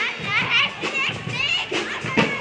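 A group of children shouting and calling out in high voices, overlapping one another, with music and a few drum beats behind them.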